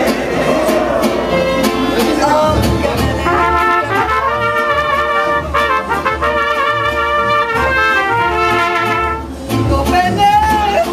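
Mariachi band playing an instrumental break: trumpets carry the melody in harmony over a steady guitarrón bass and strummed vihuela, with a brief drop in level just before the end.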